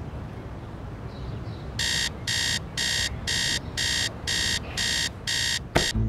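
Phone alarm beeping: short, high electronic beeps in pairs, repeating about once a second, starting about two seconds in. It is cut off near the end by a sharp click as it is switched off.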